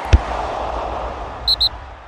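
Intro-sting sound effects: a sharp hit with a deep booming tail over a rushing whoosh, then two quick high blips about a second and a half in, the whole fading away.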